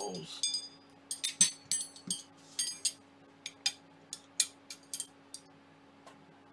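Smooth steel rods from a Prusa i3 MK3S kit clinking and ringing against each other as they are sorted and lifted: about a dozen sharp metallic clinks, each with a short high ring.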